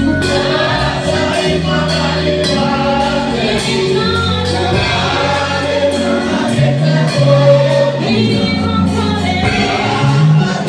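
Live gospel praise music: a choir singing together over an electric bass guitar playing low notes that change every second or two, with a steady beat.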